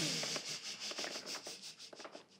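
A faint rubbing noise with a quick, even pulse that fades away.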